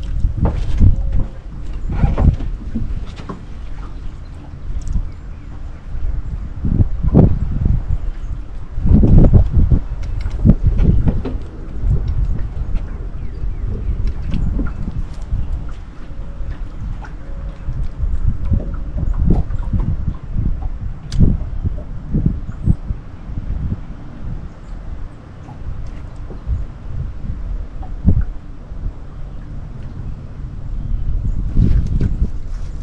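Wind buffeting the microphone in uneven gusts, a deep rumble that swells and fades every few seconds, with scattered light knocks and clicks.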